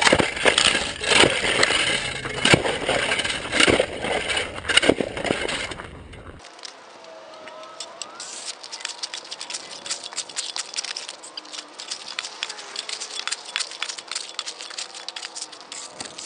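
Ice on a driveway being chipped and pried up with a roofing shovel: loud, close cracks, scrapes and breaking chunks for about six seconds. Then the same work heard from farther off, as a quieter run of quick clicks and scrapes.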